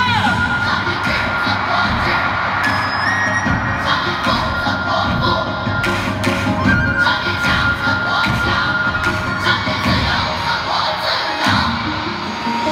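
Large concert audience cheering and screaming over the music of a song's intro.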